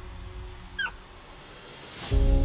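Golden retriever puppy giving one short, high whimper about a second in, dropping in pitch.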